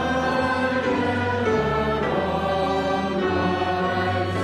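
A church congregation singing a hymn together in unison, with instrumental accompaniment. The notes are held long and change every second or so.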